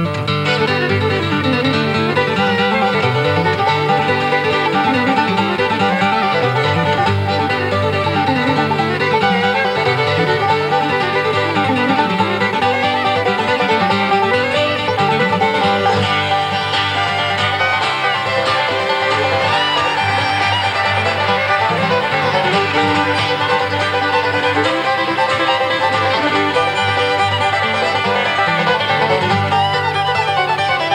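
Bluegrass trio of fiddle, flatpicked acoustic guitar and five-string banjo playing a fast fiddle tune together, with a steady driving rhythm and no pauses.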